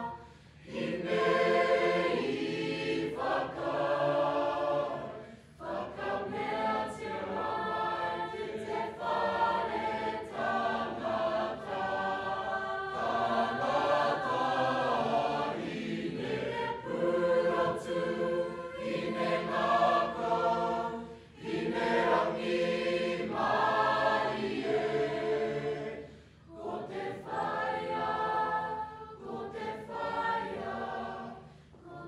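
Mixed-voice choir singing in long phrases, with brief breaks between them.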